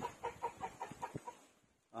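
A chicken clucking: a quick run of short clucks that trails off in the first second or so.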